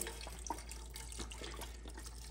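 Beef broth pouring from a carton in a steady stream into a pot of browned ground beef, a quiet splashing of liquid.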